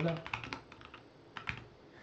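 Typing on a computer keyboard: a quick run of keystrokes, then a few scattered single key clicks.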